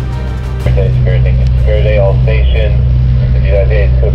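Background music that stops about a second in. A boat's engine then runs with a steady, loud low drone, and indistinct voice-like sounds rise and fall over it.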